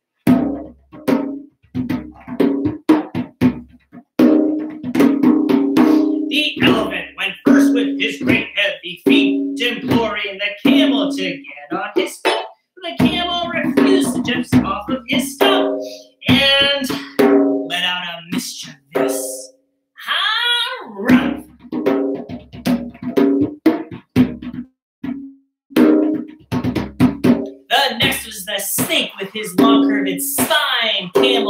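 Hand drumming on a goblet drum: a steady run of slaps and open strokes on the skin head, played with bare hands. A man's voice sings and chants over the drumming in held, sliding notes.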